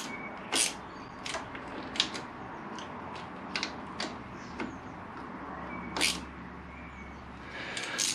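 Scattered small clicks and taps of a hand tool tightening the two clamp screws of a motorcycle clutch master cylinder on the handlebar, done alternately to pull the clamp down evenly. A faint low hum comes in near the end.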